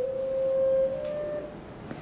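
A steady, pure-sounding tone that steps slightly higher in pitch about a second in, then stops halfway through.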